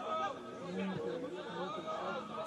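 Several distant voices shouting and calling across a football pitch, the words not clear, over open-air background noise.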